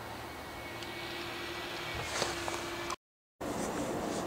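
Steady outdoor background noise with a faint steady hum and a brief click a little after two seconds. About three quarters of the way in, the sound drops out completely for half a second at an edit, then resumes slightly louder.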